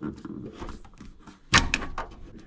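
Handling noise from a heavy 70 mm² battery cable and its crimped copper lug being worked into the terminal compartment of a Victron Multiplus II inverter: light rubbing and knocking, then a quick cluster of sharp clicks about one and a half seconds in as the lug is set onto the terminal stud.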